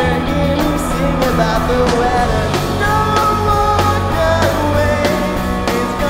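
Live ska-rock band playing: drums, electric guitar and a horn section with trombone and saxophone, with a singer's voice over the top.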